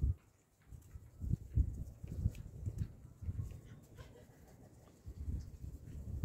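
A flock of Muscovy ducks making low, quiet sounds in short, irregular bursts, with a few faint ticks.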